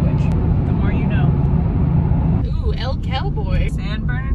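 Steady low road and engine rumble inside a moving car's cabin. About two and a half seconds in, the sound cuts to a voice over continuing car noise.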